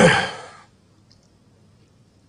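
A man's sigh: a breathy, voiced exhale that falls in pitch and fades away within the first second.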